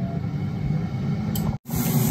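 Midea dual-basket air fryer running, its fan giving a steady hum. Near the end the sound cuts off abruptly and resumes with a brighter hiss: sizzling from asparagus on a preheated grill pan.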